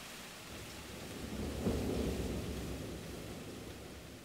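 Rain falling steadily with a low roll of thunder that builds about a second in, peaks near the middle and fades away.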